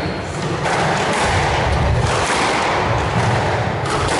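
Squash rally: a hard rubber squash ball struck by racquets and thudding off the court walls several times, with a steady background hall noise.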